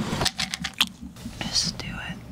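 Whispered voices: hushed, breathy words with sharp hissing consonants.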